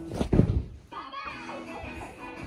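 Knocks from the phone being handled, then a child's voice over soft background music.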